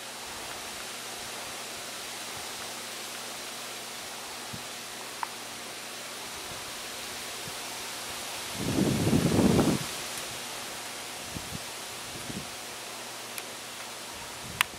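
Steady outdoor background hiss with a few faint ticks, broken about nine seconds in by a brief low rumbling burst lasting around a second.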